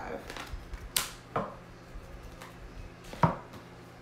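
A deck of oracle cards being shuffled by hand, with sharp slaps of cards: one about a second in, another just after, and the loudest a little past three seconds, along with lighter ticks of cards riffling.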